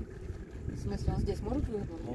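Small boat under way on a lake: a low, uneven rumble of its motor and the wind buffeting the microphone, with faint voices in the background about a second in.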